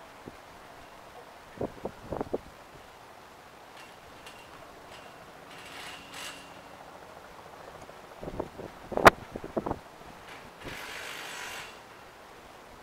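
Scattered small clicks and knocks: a few about two seconds in, then a quicker cluster around nine seconds that includes one loud, sharp click, with brief hissing near the end.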